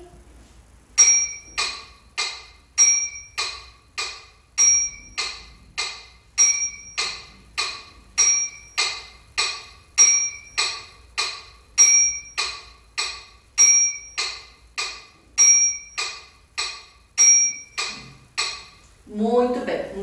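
Electronic metronome on a phone or tablet ticking in triple time, set to three beats per bar: about three clicks a second, the first of every three accented with a higher ping. It starts about a second in and stops near the end.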